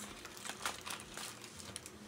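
Faint crinkling and rustling of packaging being handled, a scatter of light crackles.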